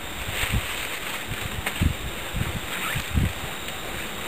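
Handling noise as braided cord is pulled through loops on a rolled wool blanket: soft rustling with irregular low bumps, over dry leaf litter.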